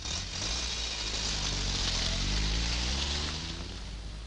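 Car engine accelerating, its pitch rising steadily over about two seconds, over a steady hiss of road and wind noise; it eases off near the end.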